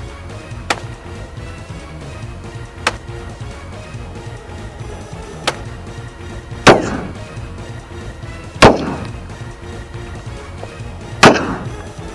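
Three faint sharp clicks in the first half, then three loud gunshots about two seconds apart, each with a short trailing echo, over background music.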